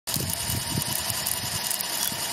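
Electric glider-launch winch motor running with a steady whirring whine, and wind buffeting the microphone in irregular low gusts.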